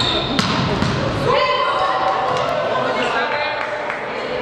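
A volleyball rally in a sports hall: several sharp ball strikes echo in the hall amid players' shouted calls, one held call a little over a second in.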